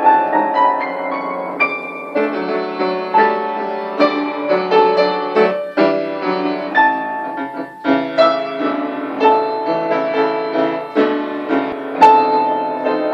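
Solo upright piano playing a polonaise: a rising run of notes in the first two seconds, then a series of struck chords and melody notes.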